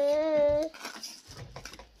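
A dog whines once, a held, slightly wavering whine lasting under a second, followed by faint scrapes of a trowel pointing mortar into brick joints.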